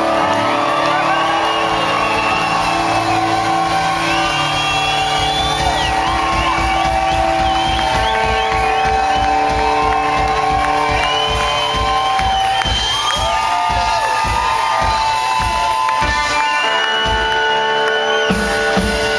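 Live rock band playing in a large hall, with held guitar chords over a steady drum beat, and the crowd whooping and cheering.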